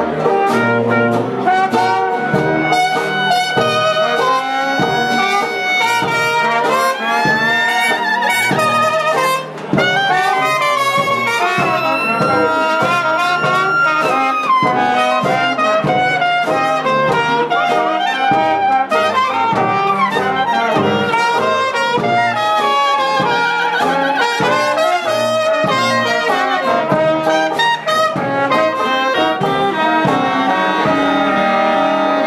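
Traditional New Orleans jazz band playing an instrumental chorus: trumpet, trombone and clarinet improvise together over a tuba bass line and banjo rhythm. The trombone slides between notes.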